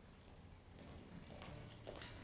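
Near silence: faint room tone, with a couple of soft knocks in the second half.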